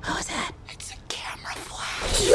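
Quiet whispering voice with short breathy sounds.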